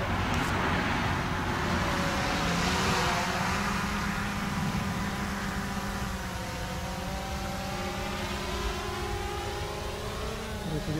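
GoPro Karma quadcopter's propellers humming steadily as the drone flies closer and lower. In the first few seconds a louder rushing noise swells and fades over the hum.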